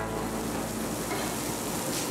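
Steady sizzling of beef patties and buns on a flat-top griddle, over a low, even hum.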